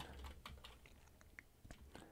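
Faint typing on a computer keyboard: a scattered run of light key clicks.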